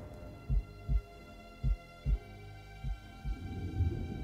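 Suspense film score: a heartbeat effect of low double thumps, lub-dub, a pair a little over once a second, under a sustained high drone.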